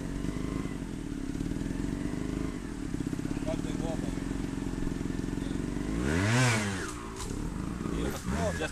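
Trials motorcycle engine idling steadily, then revved once about six seconds in, its pitch rising and falling back.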